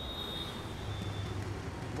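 Street traffic: motorcycle and car engines running in a steady low rumble, with a thin high tone that fades out about one and a half seconds in.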